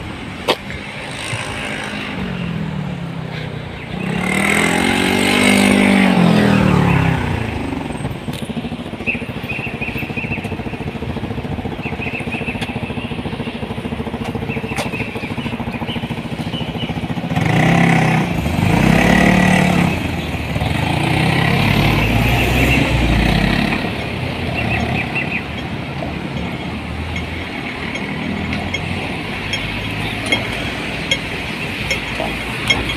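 Road traffic passing close by: vehicle engines rising and falling in pitch as they accelerate past. It is loudest about four to seven seconds in and again from about eighteen to twenty-four seconds in.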